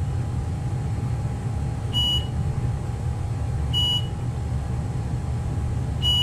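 Haas ST-20Y CNC lathe running its automatic tool-setting cycle against the tool-eye probe: a steady low machine hum, with short high-pitched beeps about two seconds apart, two in the middle and a third at the very end.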